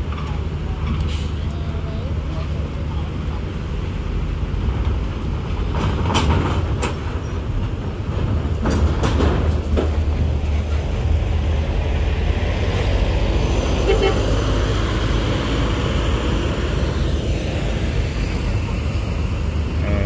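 Large coach bus's diesel engine running low and steady as the bus rolls slowly off the ferry ramp and passes close by, growing louder about halfway through. A few short knocks come through along the way.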